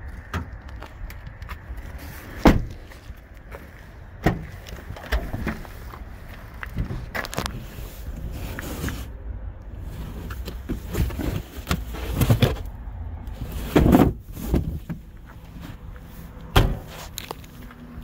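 Car doors, trunk lid and trunk floor cover of a 2014 Toyota Camry being opened and shut by hand: several separate thumps and clunks, the loudest about two and a half seconds in and near fourteen seconds, over a low steady rumble.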